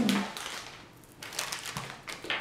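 Crinkling of a small plastic snack packet being opened, in two short rustling spells, the second starting a little past a second in.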